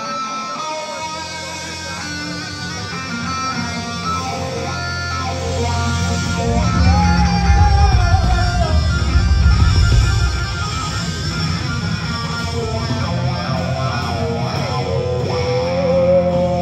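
A rock band's amplified electric guitars playing a song's opening with bass guitar underneath, heard live in a concert hall. The low end grows louder about six seconds in, then settles back.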